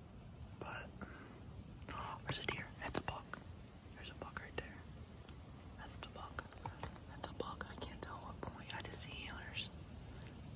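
A man whispering softly, with scattered light clicks and rustles close to the microphone.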